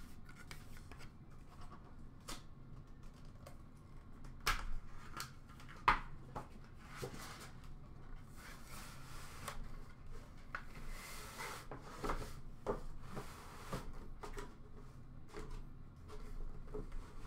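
Hands handling a cardboard box and sliding a wood-grain box out of it: cardboard rubbing and scraping, with a few sharp clicks and taps, the loudest about four and a half and six seconds in.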